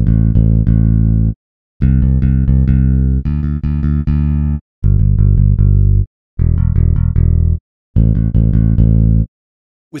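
Ample Bass P Lite II sampled electric bass guitar playing about six short phrases of quickly repeated low notes, each lasting a second or so with brief gaps between. The rapid double and triple notes come from the plugin's single-note-repeat articulation.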